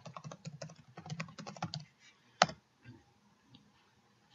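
Typing on a computer keyboard: a quick run of key presses for about two seconds, then one louder single click about two and a half seconds in, followed by a few faint ticks.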